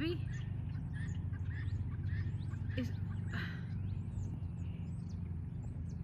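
Small birds chirping and calling in short high notes, over a steady low hum.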